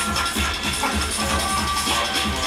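Music with a steady, evenly pulsing bass beat.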